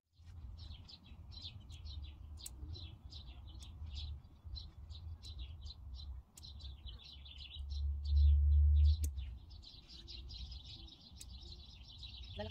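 Small birds chirping in a steady series of short high calls, about two a second, over a low rumble that swells to its loudest about eight seconds in. A few sharp clicks sound in between.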